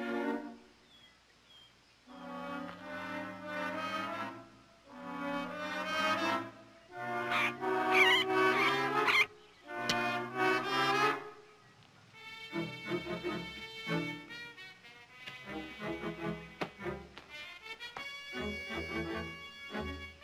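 Orchestral background score led by brass: four long held phrases that swell and break off, followed in the second half by shorter, choppier notes.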